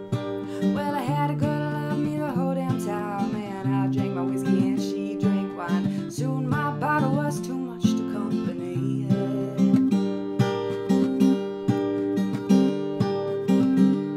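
Acoustic guitar, capoed, strummed in a steady rhythm, with a woman singing over it in phrases during the first half.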